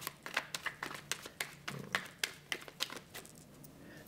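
A deck of tarot cards being shuffled by hand: a quick run of card flicks and snaps that thins out after about two and a half seconds.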